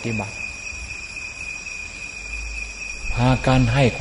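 A cricket's steady, unbroken high-pitched trill runs through a pause in a man's slow speech, over a low background rumble.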